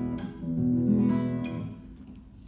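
Nylon-string classical guitar playing a few chords through a stage microphone, two chords struck about a second apart, the last one ringing and fading near the end. The chords test the level after the guitarist asks whether he sounds too loud.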